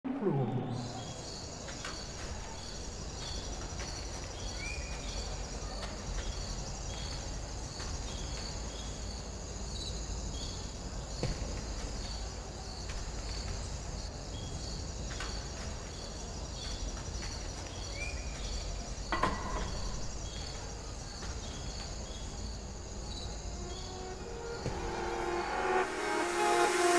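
Quiet ambience of a large hall: a steady low rumble with faint high chirps repeating about twice a second, and a few soft knocks.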